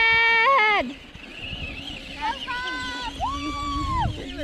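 High-pitched voices shouting: a long, loud, drawn-out shout of "go!" ending about a second in, then further held shouts and calls, quieter, in the second half.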